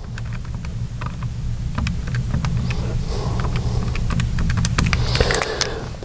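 Keys being tapped on a handheld calculator: a quick, irregular run of small clicks, over a steady low hum.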